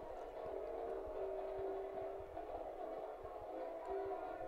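Marching band playing long held chords, faint.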